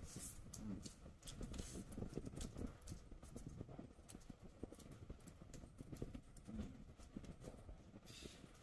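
Faint, close-miked chewing and lip smacking of a man eating chicken biryani with his fingers: soft, irregular small clicks throughout.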